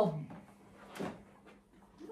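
A single knock about a second in, a door or drawer of a wooden sideboard cabinet being shut, just after a woman's voice trails off.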